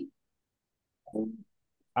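Near silence on a gated call line, broken about a second in by one short, low vocal sound, under half a second long.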